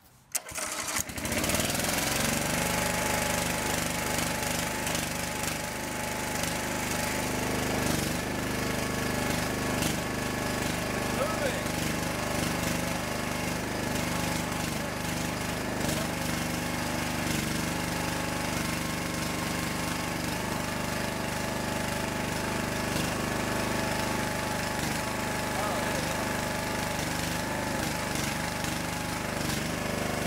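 A small gasoline engine on a homemade hydraulic log splitter is cranked and catches within about a second and a half, then runs steadily. The splitter has just been refilled with hydraulic fluid after its hydraulics had stopped working.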